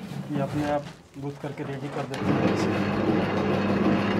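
Electric dough mixer for noodle dough switched on about two seconds in, its motor then running with a steady hum as it starts kneading maida flour and water.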